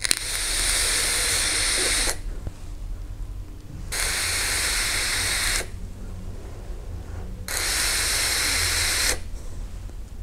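Vaping a Geekvape Aegis Boost pod mod at 30 W with the airflow fully open: three hissing passages of air rushing, each lasting a second and a half to two seconds, from the lung draw through the mesh coil and the breath of vapour.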